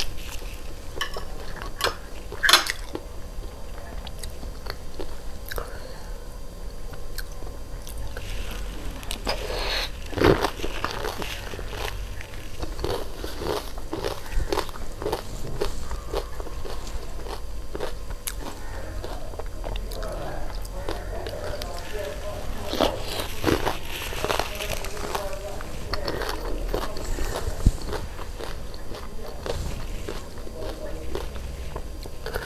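Close-miked chewing of a mouthful of laphing, with irregular crunches, wet mouth sounds and swallowing. A few sharper crunches stand out, the loudest about two and a half seconds in, about ten seconds in, and a cluster a little past twenty seconds.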